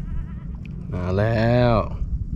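Mostly speech: a man's voice, drawn out in one long call with a wavering pitch, over a steady low rumble.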